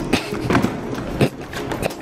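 Irregular knocks and clatter of a hard-shell suitcase being handled and opened on the floor.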